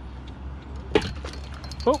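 A single sharp knock about a second in, over a steady low rumble.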